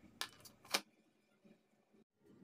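Two brief clicks within the first second, then near silence: room tone.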